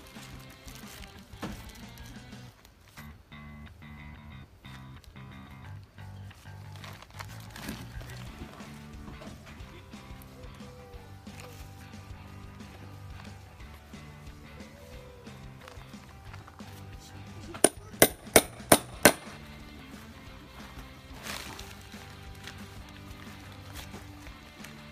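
Background music with a steady beat. Near the end come five sharp metallic strikes in quick succession: a hammer on a grommet-setting tool, setting a 12 mm metal grommet into the tarp.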